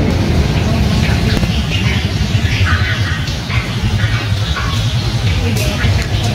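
Steady road-traffic rumble from motor vehicles running nearby, with music and voices mixed in.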